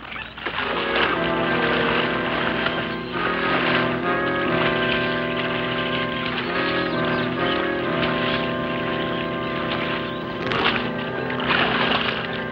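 Film-score background music: sustained chords that change every second or two, with a brief noisier swell near the end.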